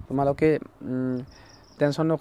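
A man speaking, drawing out a long hesitation sound about a second in. A faint high steady tone sounds for about half a second near the end.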